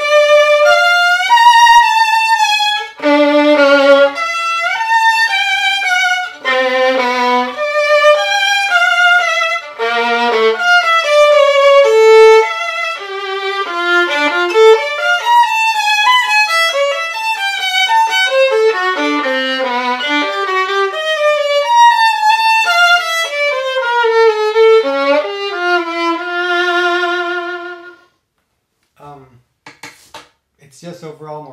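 Solo violin bowed in a short melodic passage of sustained notes with vibrato, played with the original KorfkerRest shoulder rest fitted; the playing stops about two seconds before the end.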